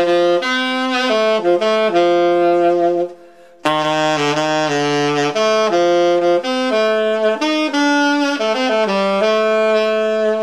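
Freshly overhauled H. Couf Royalist alto saxophone, built by Keilwerth, played solo: a melodic line of held and moving notes, a short breath pause a little after three seconds in, then another phrase.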